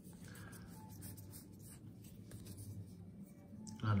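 Faint rustling and sliding of printed game cards being handled and shifted in the hand, smooth card stock rubbing against card stock.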